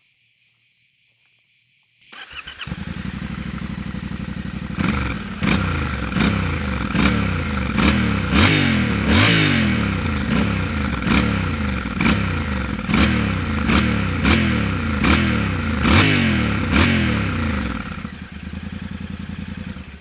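Yamaha Ténéré 700 World Raid's 689 cc CP2 parallel-twin engine, on its stock exhaust, starting about two seconds in and idling briefly. It is then revved in a long run of quick throttle blips, about one and a half a second, each rising and falling, before settling back to idle near the end.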